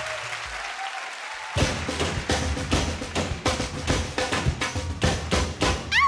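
Audience applause dies down, then about a second and a half in, the live band's percussion starts a samba rhythm, a steady beat of about three strokes a second. A rising whistle-like glide comes at the very end.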